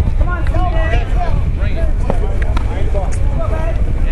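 Untranscribed voices of people at the field talking and calling, over a steady low rumble of wind on the microphone, with a few sharp clicks.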